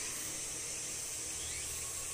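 Steady high-pitched hiss of an insect chorus in the background, unchanging throughout.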